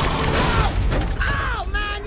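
Film sound-effects mix: a crash of heavy metal, then dense mechanical clanking and ratcheting from a giant robot tumbling, with a few falling-pitch metallic screeches.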